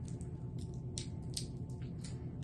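Candy wrapper crinkling in small, sharp crackles as it is peeled off a sticky chewy ginger candy that has partly melted onto it, over a steady low hum.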